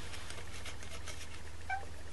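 A clay blade pressed against polymer clay on a tile, with faint handling ticks and one short, high squeak near the end as the blade rubs on the tile, over a steady low hum.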